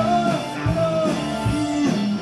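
Live rock band playing an instrumental stretch: held electric guitar notes over drum kit and bass, with a steady kick-drum beat.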